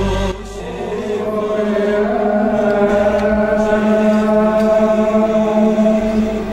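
A slow Arabic sung chant of a Gospel verse, with long held notes over a steady low drone.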